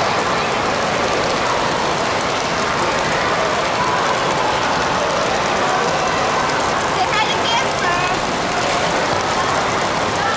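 Steady noise of water pouring and splashing at a water park, with a background babble of voices and a few children's voices rising briefly about seven seconds in.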